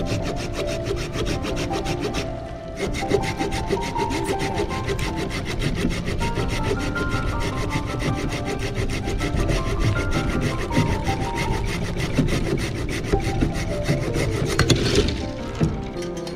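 Hand pruning saw cutting through a cherry tree branch in rapid back-and-forth strokes, with a brief pause about two and a half seconds in. The sawing stops near the end as the cut goes through.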